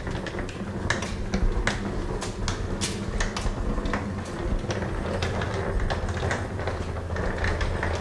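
Footsteps on a paved underpass floor, irregular sharp clicks about two a second, over the steady low rumble of a wheeled suitcase rolled along the paving slabs.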